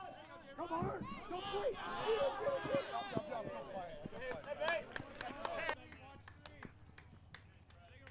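Several people shouting and cheering at once, voices overlapping, with a 'Yeah' and a 'No!' among them. The shouting cuts off abruptly about six seconds in, leaving only a few faint knocks.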